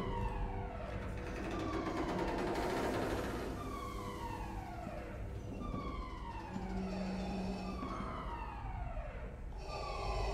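Starship alarm sounding: a falling electronic tone repeating about once every second and a half, over a steady low hum.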